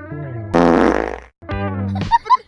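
A loud fart sound effect lasting under a second, buzzy and rasping, heard over background music. It cuts off suddenly, and the track goes silent for a moment.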